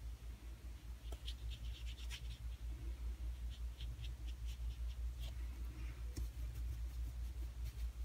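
Water brush tip scratching and tapping on watercolour cardstock in two quick clusters of short strokes, with a few scattered ticks later, over a steady low hum.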